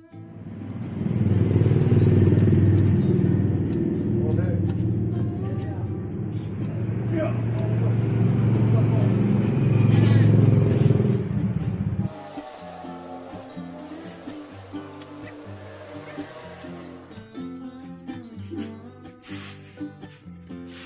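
A loud, rough low rumble for about the first twelve seconds, then background guitar music.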